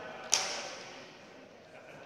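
A single sharp smack of a volleyball struck by hand about a third of a second in, ringing on in the long echo of a gymnasium.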